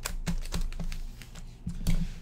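Sealed foil trading-card packs being shuffled and set down on a desk mat by hand: a quick, irregular series of light taps and clicks.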